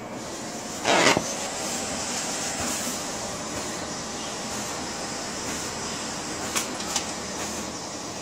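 Large format inkjet printer running as it prints, a steady mechanical noise from the carriage and paper feed. A brief loud scrape comes about a second in, and two sharp clicks come near the end.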